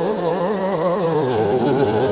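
A man wailing in one long, wavering, song-like cry, his voice sliding lower near the end.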